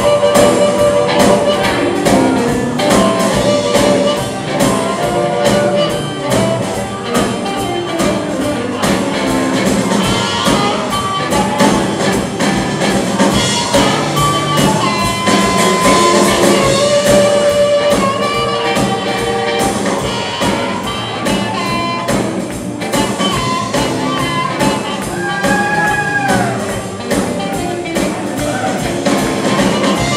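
Live electric blues band playing an instrumental: harmonica lead blown into a hand-held microphone, with held and bent notes, over hollow-body electric guitar, upright bass and drums. A long note bends downward near the end.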